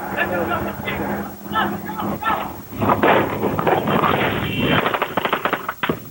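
Voices inside a vehicle, then a rapid string of close automatic machine-gun shots near the end as the vehicle runs a checkpoint under fire.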